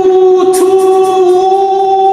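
One long sung note, held at a steady pitch, as part of an intro music sting.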